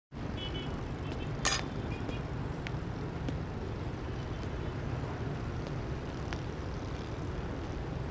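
Outdoor street ambience: a steady low rumble of distant traffic starts abruptly from silence, with a few faint high chirps in the first few seconds and a single sharp click about a second and a half in.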